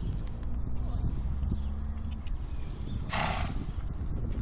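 Horse vocal sounds: a low, drawn-out tone for the first two seconds, then a single sharp snort through the nostrils about three seconds in.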